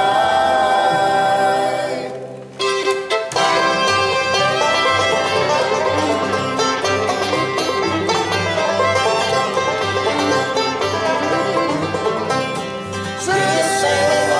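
Acoustic bluegrass band: a held vocal harmony on the last word of the chorus fades about two seconds in, then after a brief pause a fiddle-led instrumental break starts over banjo, guitar and upright bass keeping a steady beat. Voices come back in near the end.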